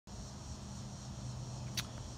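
Steady outdoor background of insects buzzing, over a low steady hum, with one brief sharp click near the end.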